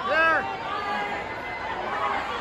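Crowd of people chattering in a large hall, with one short voiced call, rising and falling, right at the start.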